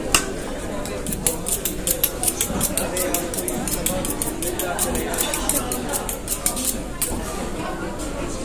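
A knife being drawn rapidly back and forth along a steel honing rod, a quick run of sharp metallic strokes. It starts about a second in and stops about a second before the end.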